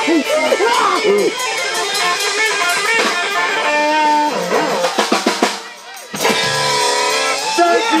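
Live band with singing, upright double bass, hollow-body electric guitar and drums, playing the close of a song. The music breaks off about six seconds in, then a last chord rings on.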